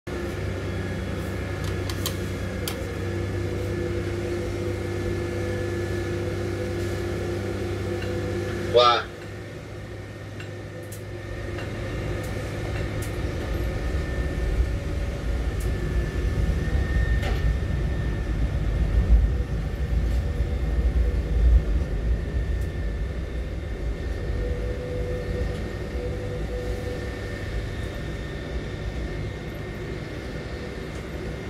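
Grab crane machinery running in bulk grain unloading: a steady mechanical hum with held motor tones. About nine seconds in, a short rising whine and sharp peak; then the hum gives way to a deeper rumble that grows and then eases off.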